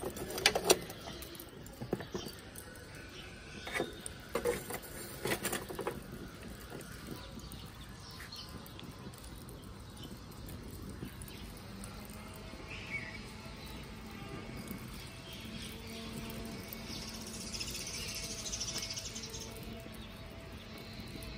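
Lump charcoal burning in an open metal barbecue grill, with a few sharp crackles and pops in the first six seconds, then a faint, steady background.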